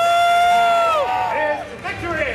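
Audience cheering, with two long, high shouts of "woo" overlapping in the first second and a half.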